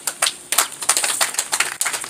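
A quick, irregular run of sharp clicks, starting about half a second in.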